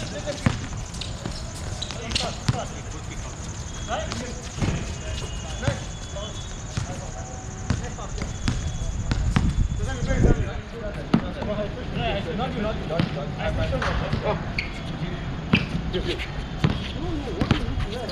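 Basketball bouncing on an outdoor hard court, irregular thuds of dribbling through the play, with players' voices calling out over it.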